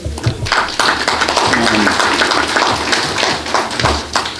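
Audience applauding in a hall: many hands clapping steadily for about four seconds, with a voice briefly heard among the clapping.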